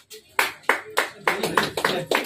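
Hands clapping in a steady rhythm, about three sharp claps a second.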